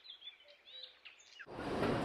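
Faint bird chirps over quiet outdoor ambience, then about a second and a half in, a steady, noisy din of tea-factory machinery starts abruptly.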